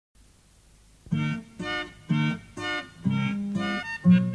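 Song intro on a keyboard: after a second of faint hiss, it plays short chords about twice a second, the last one held a little longer.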